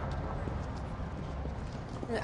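Footsteps on a paved sidewalk, a series of faint hard steps over a steady low rumble.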